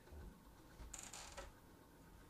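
Near silence: room tone, with one faint, short noise about a second in.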